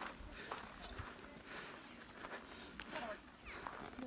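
Footsteps on a packed-snow trail, a walker's steady pace of roughly two steps a second.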